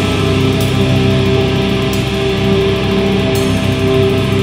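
Recorded heavy metal song: distorted electric guitars holding long chords over a steady band, with three sharp crashes roughly a second and a half apart.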